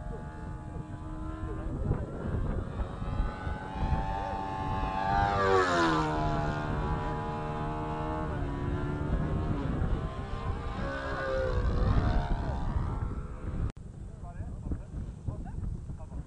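Radio-controlled model airplane flying overhead, its engine and propeller note dropping sharply in pitch as it passes about five to six seconds in, then climbing again as it comes back around. The sound breaks off abruptly near the end and turns quieter and more distant.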